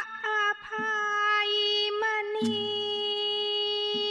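Thai pi (reed oboe) playing a slow, ornamented melody of long held notes with small slides between them. A sharp percussive stroke and a low drum note come in about two and a half seconds in.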